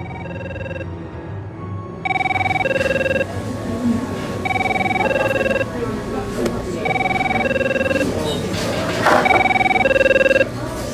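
Mobile phone ringing with a two-note electronic ringtone. The ring repeats about every two and a half seconds: faint at first, then loud from about two seconds in, sounding four times.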